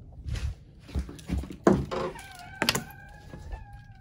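Knocks and thumps of a door being handled and footsteps in slide sandals on a tile floor. The loudest knock comes about two thirds of the way through. A thin steady tone, falling slightly, runs through the second half.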